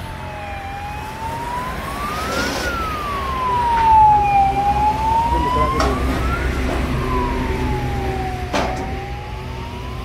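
An emergency-vehicle siren wailing, its pitch sweeping slowly up and down about every four seconds and loudest around the middle, over a steady low engine hum.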